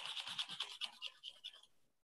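A paintbrush scrubbing paint onto canvas in quick, repeated short strokes, scratchy and fairly faint, stopping a little before the end.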